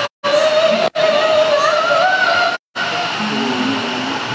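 A woman's voice reciting the Qur'an in a melodic chant, one long held line that wavers slowly up and down in pitch. The sound cuts out suddenly and briefly three times: at the very start, about a second in, and a little past halfway.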